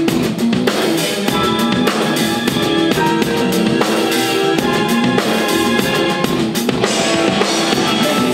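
Drum kit on DW drums and Zildjian cymbals played live, with many rapid hits on snare, bass drum and cymbals, over a backing track of held melodic notes.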